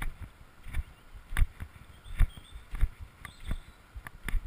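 Footfalls of a runner on a dirt trail: a regular series of short thumps, about one and a half a second.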